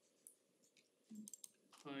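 Near silence in a meeting room, with a few faint clicks and a voice starting near the end.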